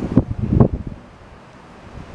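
Low, uneven buffeting of wind on the microphone for the first half second or so, then a quieter lull.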